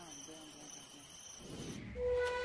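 Faint, steady chirping of crickets, which cuts off abruptly near the end.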